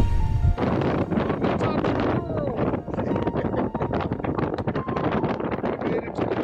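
Background music cuts off about half a second in, giving way to wind gusting across the microphone: a rough, crackling rush that keeps surging and dropping.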